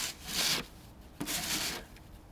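A hand rubbing against a snowman's packed snow body: two scraping strokes about a second apart.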